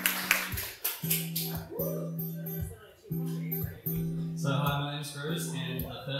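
Acoustic guitar strummed, playing a song's introduction in repeated chord strokes that ring on between them; the playing grows fuller about four and a half seconds in.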